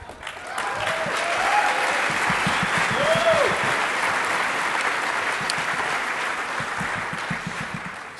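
Auditorium audience applauding, with a few cheering calls rising over the clapping, the clearest about three seconds in. The applause swells in the first second and tapers off near the end.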